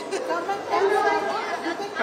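Schoolchildren's voices chattering at once, many overlapping with no single clear speaker.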